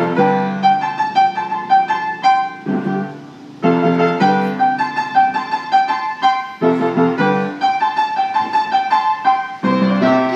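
Piano being played: a melody of struck notes over lower chords, with a brief break about three seconds in before the playing picks up again.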